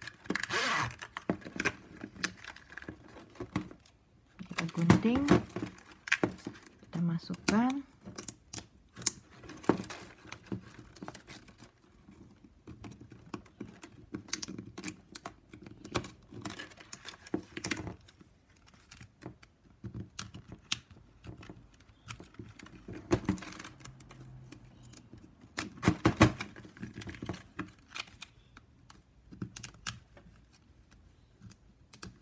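Stiff plastic strapping band clicking and rasping as it is threaded and pulled tight through a woven piece by hand: irregular sharp ticks and scrapes with short pauses between them.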